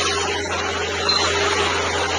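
Steady rushing background noise with a constant low hum underneath and a faint steady tone, typical of an outdoor phone recording.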